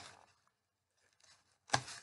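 Hands handling a cardboard loom on a table as a small weaving is taken off it: a faint rustle about a second in, then one short, sharp scraping noise near the end.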